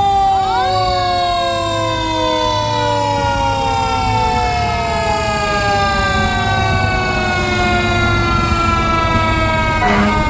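Fire truck sirens wailing and slowly falling in pitch throughout, with a brief rising wail about half a second in and another starting near the end. Truck engines rumble underneath.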